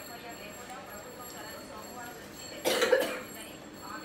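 A child coughs once, loudly and briefly, about three seconds in, over quiet chatter.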